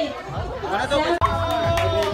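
People's voices: a shout of 'hey' and group chatter, then a voice holding one long note from about a second in.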